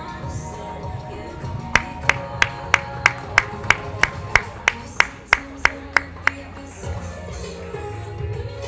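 Background pop music playing, with a run of about fifteen sharp, evenly spaced claps, about three a second, from about two seconds in to about six seconds in.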